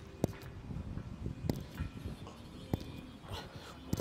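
A man breathing out once, near the end, as he strains through a slow press-up, over a low outdoor rumble with four sharp clicks about a second apart.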